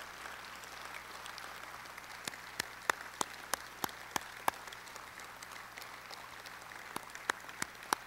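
Audience applauding, a steady patter of many hands, with sharper single claps close by, about three a second, in the middle and again near the end.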